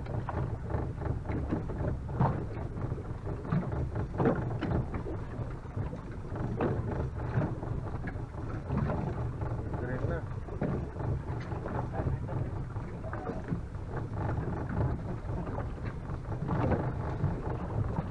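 Steady low rumble of a small boat at sea with wind on the microphone, scattered short knocks, and faint indistinct voices in the background.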